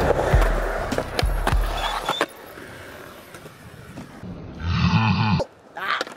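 Skateboard wheels rolling on concrete, with a few sharp clacks from the board, under music that cuts off about two seconds in. Near the end comes a short vocal noise from a person.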